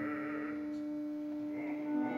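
Live opera music: the baritone's held sung note, with vibrato, fades out about half a second in. A single steady orchestral note is sustained beneath it throughout.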